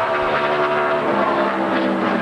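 NASCAR stock car's V8 engine running at high, steady revs at speed through a qualifying lap.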